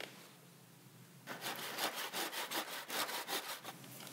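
Hand saw in a mitre box cutting a 45-degree mitre through a skirting board, with rapid, even back-and-forth strokes that start about a second in.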